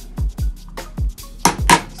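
Two sharp taps in quick succession, about one and a half seconds in, from a hammer striking a punch to make a punch mark in an electric unicycle hub motor's aluminium cover. Background music with a beat of low thumps runs under it.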